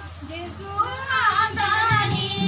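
A high voice singing a devotional song: soft at first, then stronger from about a second in, the melody sliding up and down.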